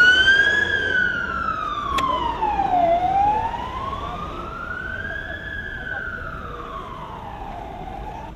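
Ambulance siren in a slow wail, sweeping up and down in pitch about every five seconds and fading steadily as the ambulance drives away.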